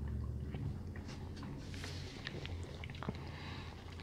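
Quiet sipping and swallowing of a mixed drink from glasses, with a few faint scattered clicks over a low steady hum.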